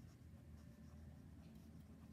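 Faint scratching of a pen writing on lined notebook paper.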